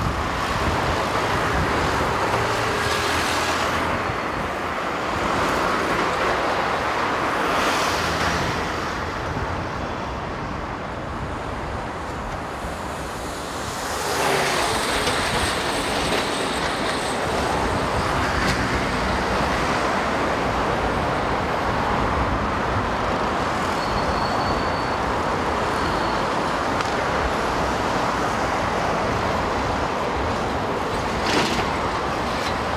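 Road traffic on a multi-lane highway: a steady rush of tyres and engines, with vehicles passing close by about three, eight and fourteen seconds in. Traffic eases briefly just before the last pass.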